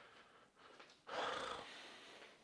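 A man's single audible breath, about a second in and lasting about half a second.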